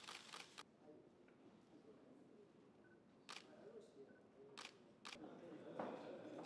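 Camera shutters clicking: a quick cluster of clicks at the start, then single clicks about three, four and a half and five seconds in, over faint low talk.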